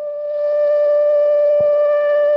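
A music sting in a radio drama: one held note with a pure tone and faint overtones, swelling over the first half second and then steady, marking the dramatic turn as a scene ends.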